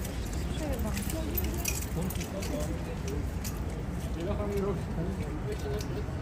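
Faint talk of bystanders over a steady low rumble of outdoor ambience, with scattered light clicks.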